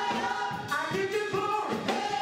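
Recorded gospel music: a choir singing long held notes over a steady beat.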